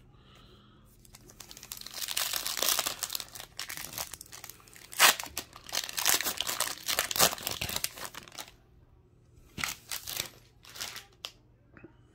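Foil wrapper of a Topps Gallery trading-card pack being torn open and crinkled by hand: several seconds of dense crinkling, then a few short crinkles near the end.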